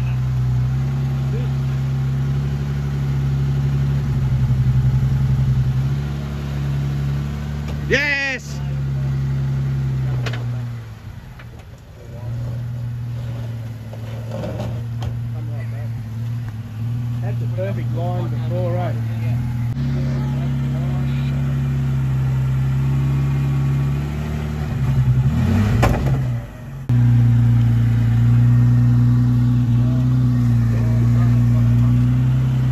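Jeep Wrangler Rubicon's engine running under load as it crawls over rocks, its note stepping up and down with the throttle. It drops low around twelve seconds in and picks up strongly again near the end.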